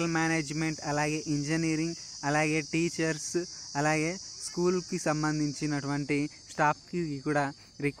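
A man speaking Telugu in a steady narrating voice, over a constant high-pitched hiss.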